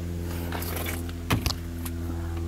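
A truck engine running at a steady idle, with a couple of sharp clicks about a second and a half in.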